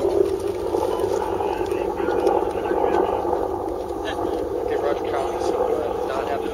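A steady engine drone, with faint, indistinct voices over it in the second half.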